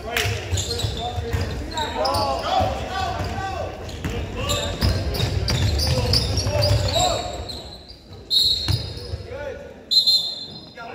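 Basketball game noise in a gym hall: the ball bouncing on the hardwood floor amid spectators' voices and shouts. About eight seconds in, a shrill referee's whistle stops play.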